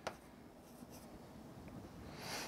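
Faint rubbing of a stylus drawing on an interactive display board, with a short click at the start.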